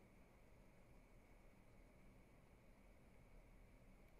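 Near silence: faint background hiss of the recording.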